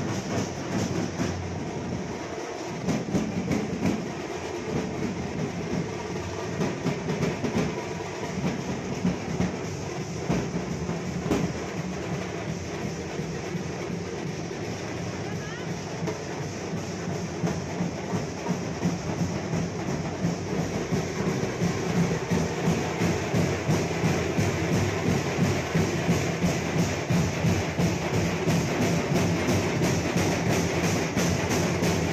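Procession drum group beating large stick-played drums in a fast, steady rhythm amid crowd noise, louder in the last third.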